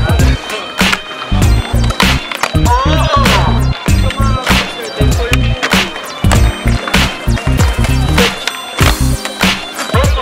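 Hip-hop music with a steady, heavy beat and a vocal line.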